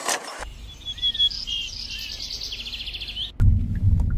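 Small birds chirping and singing in quick repeated notes and a short trill over a faint low rumble. About three and a half seconds in, a click and a much louder low rumble cut in.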